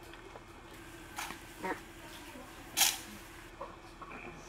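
A squad of soldiers drilling and coming to a halt on a grass parade ground: a few short scattered sounds, the loudest a single sharp burst about three seconds in, over a faint steady hum.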